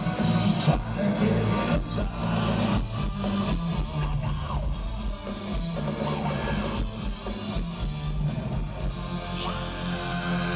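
Live hard rock band playing loudly: electric guitar, bass guitar and drums.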